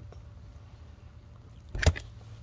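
A faint steady low hum, with a single short thump near the end.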